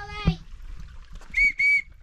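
Two short, even whistle blasts on one high steady note, a quarter second each and close together, whistled to call a dog back from chasing sheep.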